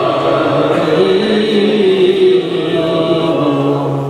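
Unaccompanied male devotional chanting of a naat through the microphone, with long drawn-out melodic notes that slide between pitches. It begins to ease off near the end.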